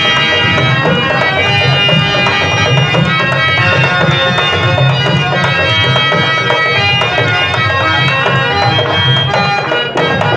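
Instrumental stage accompaniment: a harmonium holding sustained reedy notes over tabla strokes, playing continuously.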